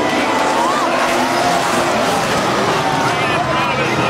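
A pack of late-model stock cars racing on a short oval, their engines running together loud and steady, with spectators in the stands shouting over them.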